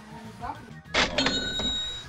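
A bright bell-like chime comes in with a sharp hit about a second in, then several high tones ring on steadily, over soft background music.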